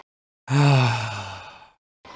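A man's single long, breathy sigh, starting about half a second in and fading away, with dead silence before and after it.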